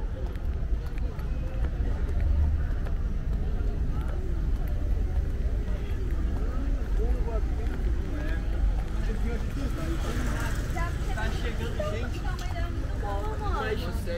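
People talking close by, with voices clearer and louder in the second half, over a steady low rumble.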